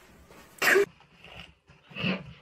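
One short, loud cough-like burst about half a second in.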